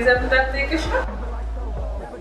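A woman's high-pitched voice speaking for about the first second, over background music with a steady low hum that carries on once she stops.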